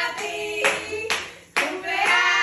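Several voices singing a birthday song together over hand clapping, with a brief drop-out shortly before the end.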